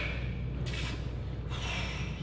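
Heavy breathing of bodybuilders straining to hold a pose: two short, breathy exhalations, one about half a second in and one near the end, over a steady low room hum.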